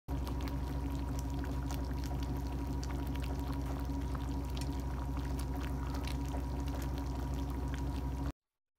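Thick crab sauce bubbling and popping in a pan around simmering blue crabs, a steady run of small pops and crackles over a steady low hum.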